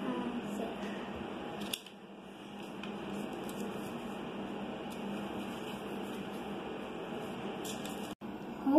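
Hands pressing and smoothing glued paper cut-outs onto a workbook page: paper rubbing and rustling against paper over a steady background hiss, with a sharp click a little under two seconds in.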